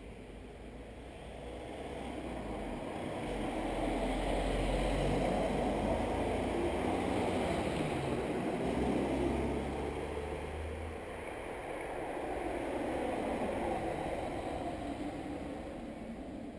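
A car passing on the road alongside, its tyre and engine noise swelling as it approaches, then easing off, with a smaller swell again near the end.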